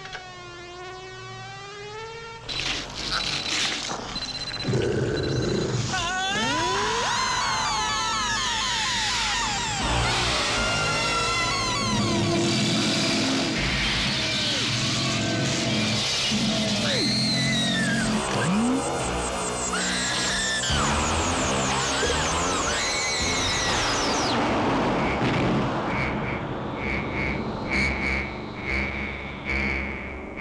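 Synthesizer film score mixed with sci-fi sound effects. A warbling tone opens it, then a loud, dense layer of sweeping and arching pitch glides takes over, and a pulsing high tone comes in near the end.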